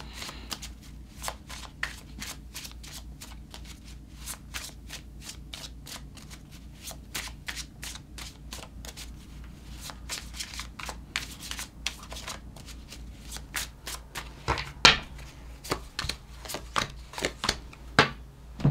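A tarot deck being shuffled hand to hand: a quick, continuous run of card flicks and slides, a few of them louder near the end.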